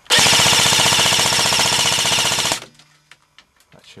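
Jing Gong SIG 550 airsoft electric rifle, downgraded to under 1 joule, firing one long fully automatic burst of about two and a half seconds, its gearbox cycling rapidly, then stopping abruptly.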